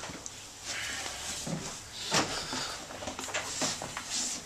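Footsteps and scuffs on a wooden floor, with irregular knocks and clothing rustle as a person crouches and squeezes through a narrow passage.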